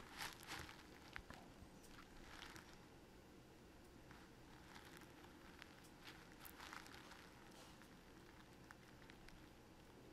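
Near silence: faint room tone with a few soft, scattered clicks.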